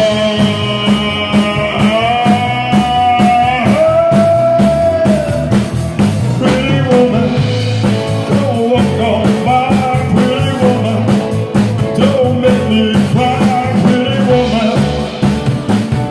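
Live rock and roll band playing a song: a man singing long held notes into a microphone over a steady drum-kit beat and keyboard.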